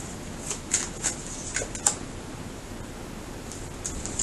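A deck of tarot cards being shuffled by hand: a run of short, crisp card snaps in the first two seconds, then only a couple of faint ones.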